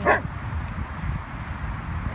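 A dog barks once, a single short sharp bark just at the start, then no more barks for the rest of the moment.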